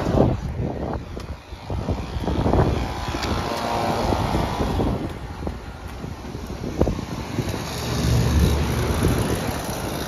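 Footsteps and handling knocks over wind and outdoor noise, with the low hum of a running air-conditioner condensing unit coming up near the end.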